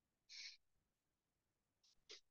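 Near silence: room tone in a pause of speech, with a faint short hiss about a third of a second in and another just before the end.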